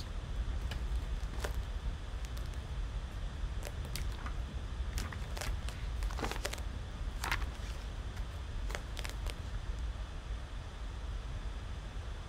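Pages of a tarot guidebook being leafed through: scattered short paper rustles and soft taps over a steady low hum.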